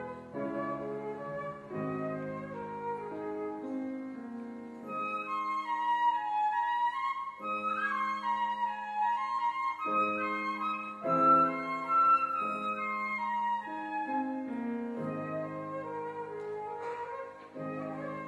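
Concert flute and grand piano playing a classical piece together, the flute carrying the melody over piano chords. The music grows louder and the melody climbs higher from about five seconds in.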